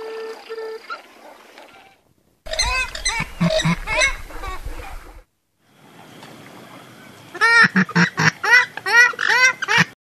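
Purple swamphens calling: runs of repeated, loud, arching calls, one starting about two and a half seconds in and a louder, denser run over the last three seconds.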